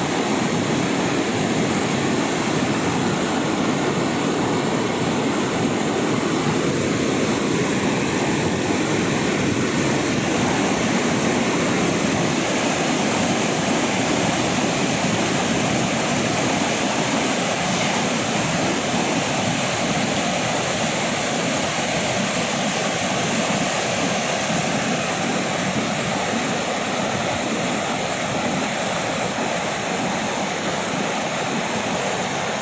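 Yellowstone River rapids: fast whitewater rushing over and around rocks in a loud, steady rush of water.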